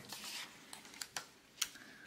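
Hands handling planner stickers and paper: a faint rustle of paper, then a few light ticks as a sticker is picked up and placed on the insert.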